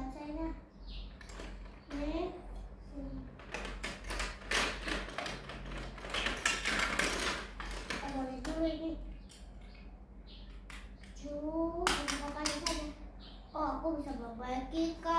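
A young girl's voice in short stretches, between clicks and rattles of small plastic dolls and dollhouse pieces being handled, with a busy spell of handling noise in the middle.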